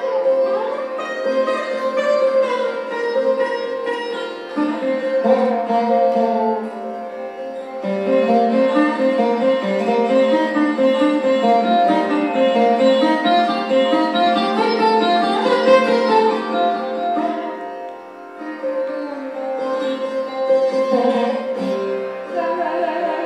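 Sarod playing a flowing melodic passage in raga Bhimpalasi, plucked notes running up and down over a steady drone.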